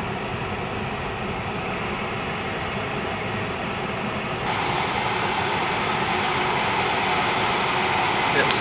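Steady road and engine noise inside a moving vehicle's cabin, growing louder and brighter about halfway through.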